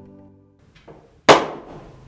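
A plucked-string music cue dies away, then one sharp percussive hit sounds about a second and a quarter in and rings out briefly. It falls at a cut between scenes.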